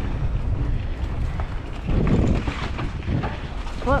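Wind buffeting a bike-mounted microphone over the low rumble of mountain bike tyres rolling on a dirt singletrack, with light clicks and rattles from the bike. The rumble swells about halfway through.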